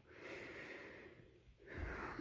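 Two faint breaths through the nose, a longer one in the first second and a shorter one near the end.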